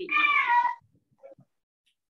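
A cat meowing once: a single drawn-out call under a second long, falling slightly in pitch at the end.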